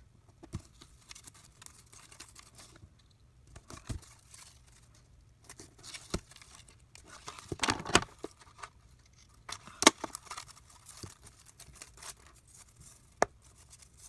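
Glitter washi tape being peeled off its roll, torn and pressed onto a paper planner page, with scattered paper rustling and sharp little clicks; the loudest stretch of peeling and tearing comes about eight seconds in.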